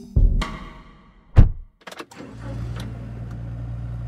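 A thud, then a loud car door slamming shut about a second and a half in, followed by a car engine running steadily with a low hum.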